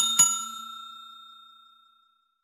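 Notification-bell "ding" sound effect of a subscribe-button animation: two quick strikes, a fraction of a second apart, ringing out in a few clear tones that fade away over about two seconds.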